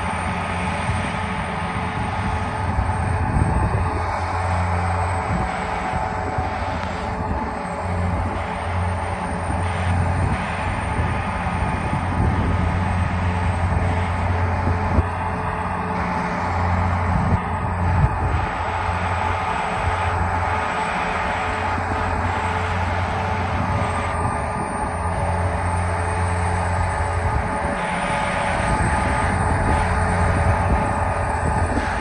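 Seismic vibrator trucks running their diesel engines in a steady, heavy drone while shaking the ground for a seismic survey, with a deep hum that swells and drops every few seconds.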